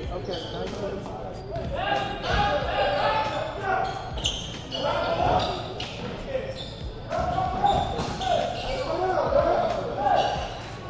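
Basketball dribbling on a hardwood gym floor during play, with short high squeaks from sneakers and indistinct shouting from players and spectators, all echoing in the gym.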